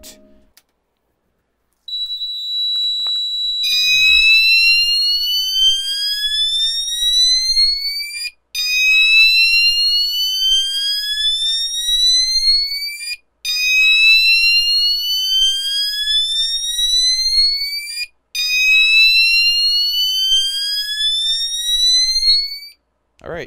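System Sensor CHSWL chime strobe sounding its Whoop tone. A short steady high beep gives way to slow upward-sweeping whoops. Each whoop rises for about four and a half seconds, with a brief break before the next, repeating four times.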